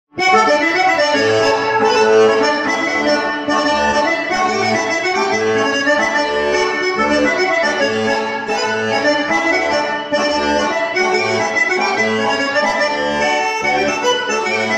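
Diatonic button accordion (organetto) playing a polka-tarantella: a busy melody over a bass that alternates between two low notes in a steady oom-pah pulse, starting at once just after the opening.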